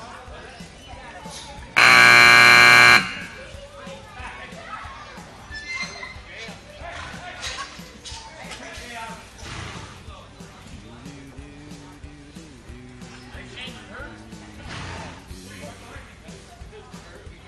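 A loud arena timer buzzer sounds once for just over a second, about two seconds in, with music and indistinct voices going on quietly around it.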